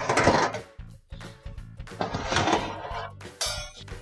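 Metal oven racks sliding out of the oven along their rail supports, two scraping rushes of metal on metal, over background music.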